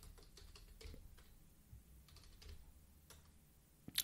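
Faint computer keyboard typing: scattered, irregular light key clicks.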